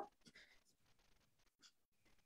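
Near silence on a video-call line, with a few very faint clicks.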